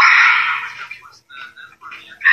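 A woman's voice with a thin, tinny sound, loud at first and then trailing off into faint broken sounds about a second in.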